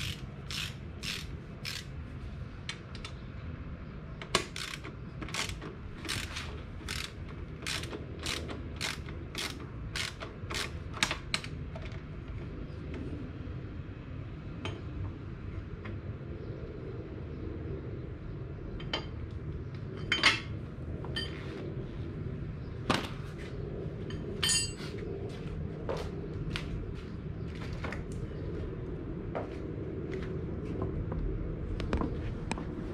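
Ratchet wrench clicking as it turns out the motorcycle's big rear axle bolt, about two clicks a second for the first ten seconds or so, then scattered clicks and metal knocks as the work goes on.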